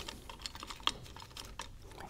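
Faint, scattered light clicks and taps as the metal cover plate is lifted off a Chrysler 62TE transmission solenoid pack by gloved hands.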